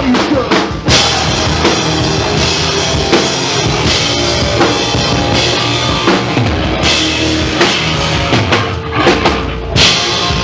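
Punk rock band playing live, an instrumental stretch with no singing: electric guitars, bass guitar and a drum kit with crashing cymbals, loud and dense, the cymbals coming in bright about a second in.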